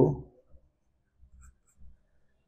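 Near silence with a few faint, soft taps and scrapes of a stylus writing on a tablet, about a second in and again near the end.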